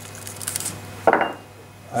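Kitchen handling noise as black pepper is put on the roast: a brief high rattle about half a second in, then a single louder knock just after a second.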